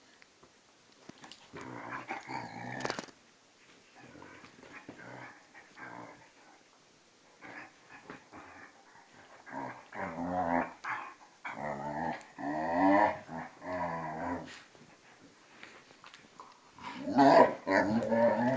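A Hungarian vizsla and a German shorthaired pointer growling at each other in play-fighting, in bouts of a second or more with short pauses, the loudest bout near the end. The growls are playful, not aggressive.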